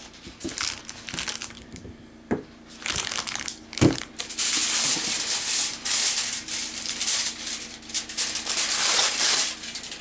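Aluminium foil crinkling and crumpling in the hands, continuous and fairly loud from about four seconds in until near the end. A couple of sharp knocks come before it, a few seconds in.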